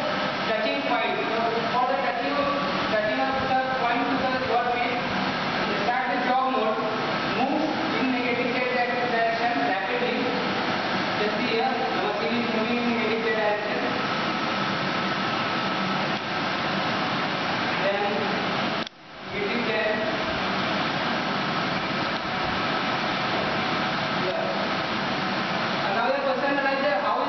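Indistinct talking in the first half, then a steady machine hum with a thin steady whine from a switched-on HMT Trainmaster CNC training lathe. The sound cuts out briefly about two-thirds of the way through.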